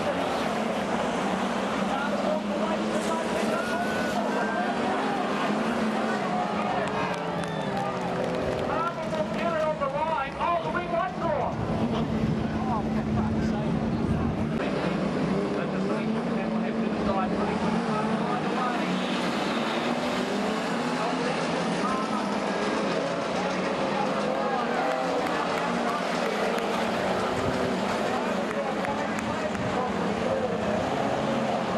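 Several stock car engines running and revving as the cars lap a dirt oval, their pitches rising and falling and overlapping, with voices mixed in.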